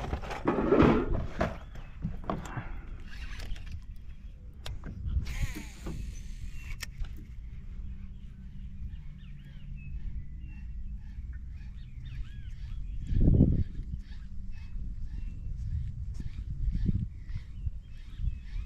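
Short bird calls repeating over a steady low wind rumble, with a brief hissing burst about five seconds in and a single dull thump later on.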